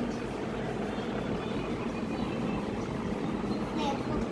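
Steady background noise with a low hum and no distinct event.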